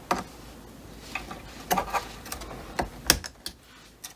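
Irregular small sharp clicks and scrapes of a metal pick working at a retaining ring on the roller shaft of a Cricut Maker cutting machine, prying the ring out of its groove on the shaft.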